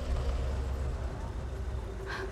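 Low, steady rumble of a car engine idling.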